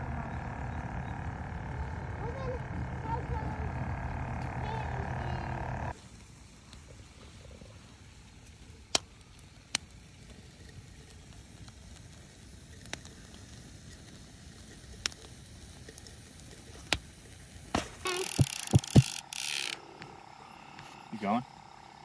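A bait tank's aerator pump humming steadily, stopping suddenly about six seconds in. After that comes quiet outdoor background with scattered sharp clicks, and a short louder noisy stretch near the end.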